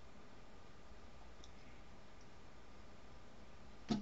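Quiet room tone with a faint steady hum and two faint computer mouse clicks, about one and a half and two seconds in.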